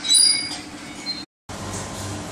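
Horizontal hydraulic baling press running: high-pitched metallic squeals, loudest just after the start, over a steady machine hum. The sound drops out briefly at a cut and then gives way to a lower, even hum.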